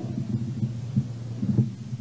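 Steady low hum on an old audio lecture recording, with a few faint low thumps.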